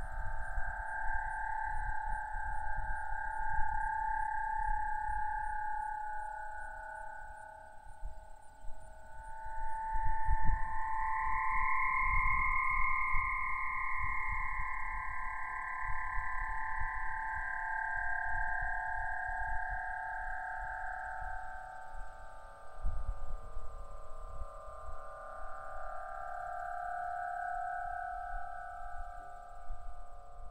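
Aeolian harp played by the wind: a single string stretched over the top of a pole and connected to two metal buckets sounds several ethereal long tones at once, which slowly rise in pitch about ten seconds in and sink again afterwards. Low wind noise rumbles underneath, with a couple of gusts.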